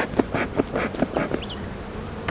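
Honeybees buzzing over an open hive, with a quick run of short puffs from a bee smoker's bellows through the first second or so.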